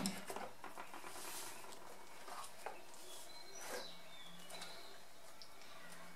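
Coloured pencils clicking and rustling as they are picked through to find the lilac one, with a few faint, brief bird chirps in the background.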